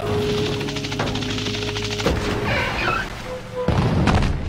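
Cartoon sound effects over background music: a fast rattling buzz for the first two seconds, a short high warbling sound in the middle, and a sudden heavy thud shortly before the end.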